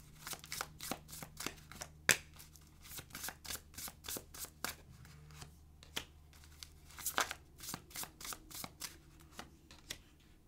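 A deck of oracle cards being shuffled by hand: a run of irregular soft card flicks and snaps, the sharpest about two seconds in, as cards are drawn out and laid on the table.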